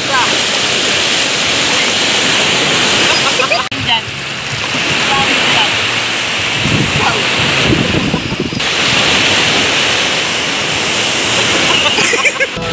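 Steady wash of small waves on a sand beach, with wind noise on the microphone.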